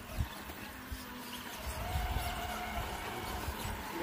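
Faint steady whine of a radio-controlled rock crawler's electric drive motor as it climbs a rock face, over a low rumble.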